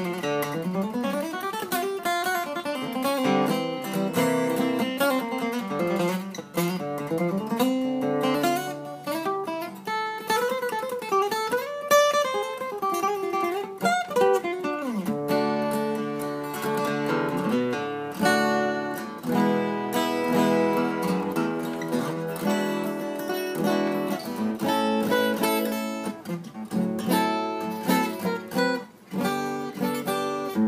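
Petronilo small-body acoustic guitar played solo, mixing strummed chords with picked single-note runs that climb and fall.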